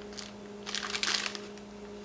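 Clear plastic bags holding mini yarn skeins crinkling as they are handled, in a brief rustle just after the start and a longer cluster of rustles around the middle.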